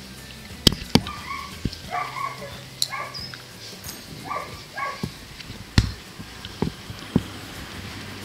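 A dog giving short, high-pitched yips or whines in about four quick clusters during the first five seconds, with a few sharp clicks scattered through.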